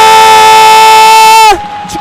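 A commentator's drawn-out shout of "goal" at full voice: one long, high call falling slightly in pitch, breaking off about one and a half seconds in.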